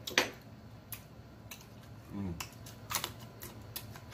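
Close-miked eating: a run of sharp, irregular clicks from chewing and lip smacking, the loudest just after the start.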